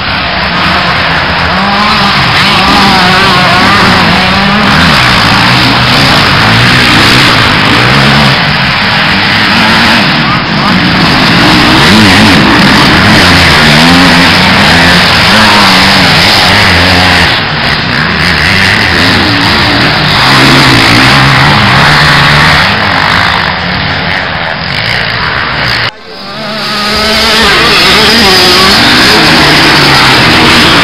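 Motocross dirt bikes racing on a track, engines revving up and falling off over and over as they climb, jump and pass. The sound is loud and breaks off abruptly a little before the end, then picks up again.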